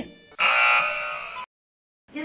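An edited-in game-show style buzzer sound effect: one harsh, steady, unchanging tone lasting about a second, cutting off suddenly.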